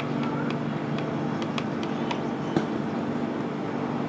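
Steady low mechanical hum, like a distant engine, with sparse faint ticks over it and a single small knock about two and a half seconds in.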